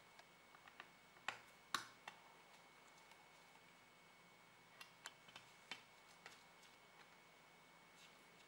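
Near silence broken by a few faint, scattered clicks and taps: a laptop cooling fan and its small parts being set in place and handled inside the open chassis.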